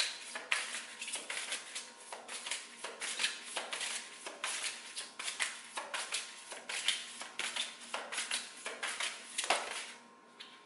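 A deck of oracle cards being shuffled by hand: a run of crisp, papery card swishes, about two a second.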